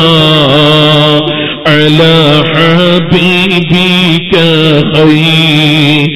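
A man's voice chanting melodically in long, wavering phrases, with short breaths between them, in the style of Islamic devotional recitation.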